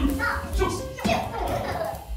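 Young children's voices during a classroom game, over background music.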